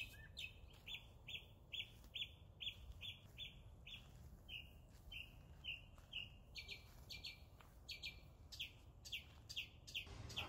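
A bird chirping over and over, a faint run of short falling chirps at about two to three a second.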